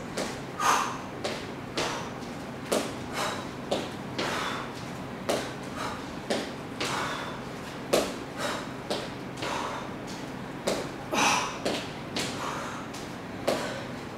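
Irregular thuds and taps of sneakered feet on a wooden floor during shadow boxing and kicking footwork, several a second, with short hissy sounds between them.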